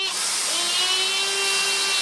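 Dyson DC35 cordless stick vacuum running: a high motor whine over rushing air. It starts up again right at the start, its pitch climbing slightly about half a second in, then runs steadily.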